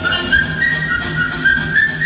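A whistled tune of several held notes, moving up and down, over a music track with a steady low beat played through loudspeakers.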